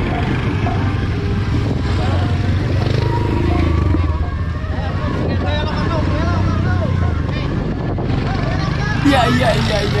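Small motorcycle engine running close by, a steady low drone that eases off near the end, with people's voices over it.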